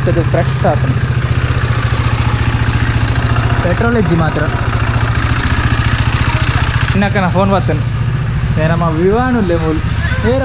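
Motorcycle engine idling steadily at a constant low speed.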